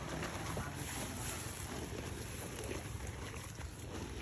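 Wind rumbling on the microphone over a steady outdoor background, with no distinct events standing out.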